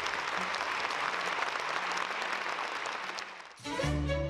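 Audience applauding, a steady dense clapping that fades out near the end, when music starts.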